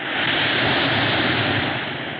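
Sea waves breaking and splashing over shoreline rocks: a steady rushing wash that swells in the first half-second and then slowly eases.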